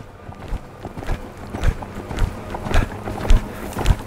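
Hoofbeats of a horse loping on arena sand: dull thuds in a steady rhythm, a little under two a second.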